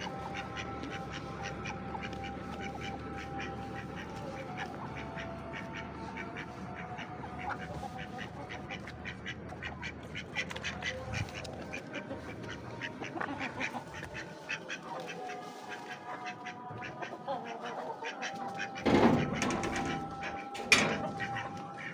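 Domestic ducks quacking over and over in short calls, with a louder thump about a second before the end.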